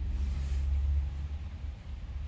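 Low rumble and faint hum from a C.E.C 550CD CD player's Sanyo SF-P1 drive spinning up and reading the disc just after play is pressed, strongest in the first second and then easing off; no music has started yet.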